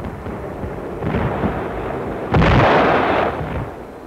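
Artillery shell explosions: a rumbling burst builds about a second in, then a much louder blast comes a little past halfway and dies away.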